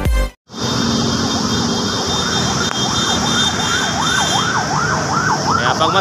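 Emergency vehicle siren wailing up and down, starting about half a second in; its sweeps quicken into a fast yelp over the last couple of seconds, over a steady background hiss.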